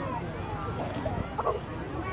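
People talking in the background, with one short dog bark about a second and a half in.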